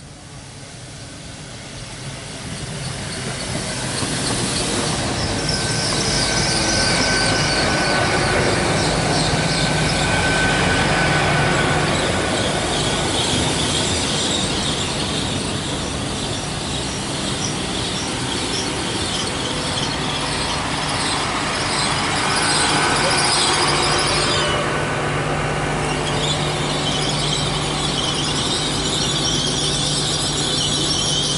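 Great Western Railway Hitachi Intercity Express Train running slowly along the platform, with a high, sustained squeal from its wheels or brakes over a steady low hum. The sound builds over the first few seconds as the train draws alongside.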